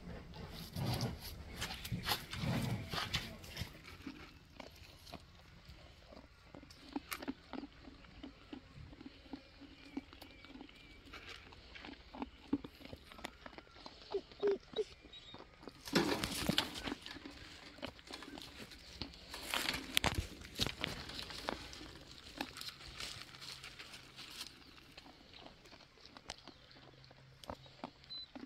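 Lamb eating pellets from a plastic feeder: irregular faint nibbling and nosing in the pellets, with a few louder bursts of animal noise.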